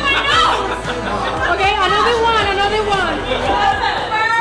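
Lively group chatter: several voices talking over each other so that no single word stands out.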